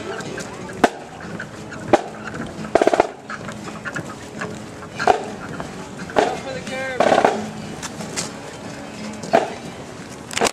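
A marching band filing past at close range, not playing a tune: voices, short honking instrument blasts and sharp stick-like clicks, spaced irregularly.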